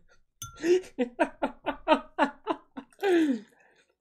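A man laughing: a quick run of short, high-pitched 'ha' sounds, ending in a longer falling laugh.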